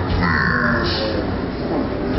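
A taekwondo competitor's short, loud kihap shout while striking, over loud rock music.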